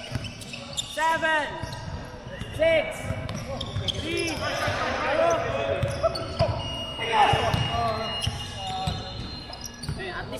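Live basketball play on a hardwood court in a large echoing hall: a ball bouncing and striking, with short high squeaks and shouts from the players.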